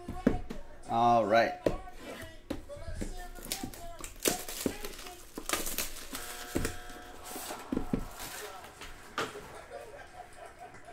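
Plastic shrink wrap being torn and pulled off a trading-card box, crackling and crinkling in a run of sharp bursts through most of the stretch. A short voiced hum rising in pitch comes about a second in.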